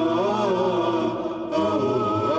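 Unaccompanied vocal chant: a sustained melodic line with gliding pitch, dipping briefly in level just past a second in.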